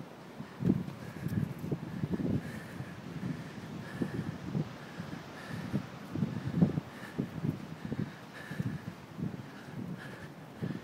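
Wind buffeting the phone's microphone in irregular gusts, a low rumbling that comes and goes.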